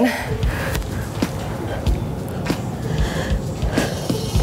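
Background workout music with a steady low beat, about three pulses a second. Over it, a person breathes hard through the nose while doing slow lying knee raises.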